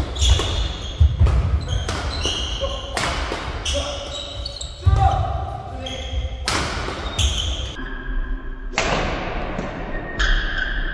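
Badminton doubles rally: a string of sharp racket strikes on the shuttlecock, with court shoes squeaking on the floor between strokes.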